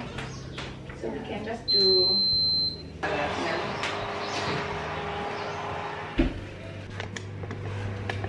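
Built-in electric oven's control panel giving one long high-pitched beep of about a second as it is set to preheat to 200 degrees. A steady hum follows, with a single thump about six seconds in.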